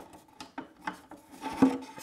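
Drawer being pulled out to full extension on KV metal ball-bearing drawer slides: a soft sliding, rubbing sound with a few light clicks.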